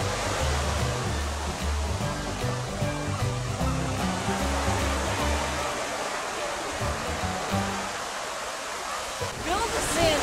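Ocean surf breaking and washing in as a steady rush of water noise, with the bass line of background music under it for about the first six seconds. A short sweeping sound comes just before the end.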